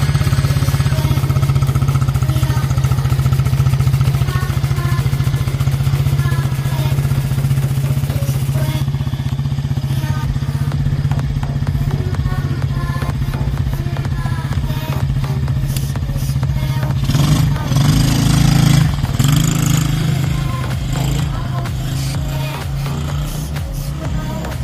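Small 70 cc four-stroke kids quad engine idling steadily. It is revved briefly a few times about three-quarters of the way through, then settles back to idle.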